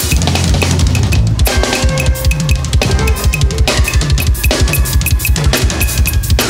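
Live drum kit played hard and fast, with dense kick, snare and cymbal hits, over a low bass line that steps in pitch.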